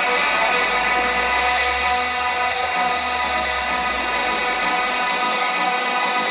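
Electronic dance music over a large PA in a breakdown: sustained synth chords with no beat, over a low bass drone that drops away near the end.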